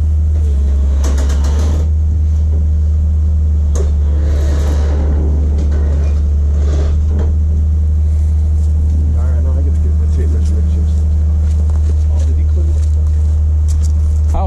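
Heavy diesel engine idling, a steady low rumble with no change in speed.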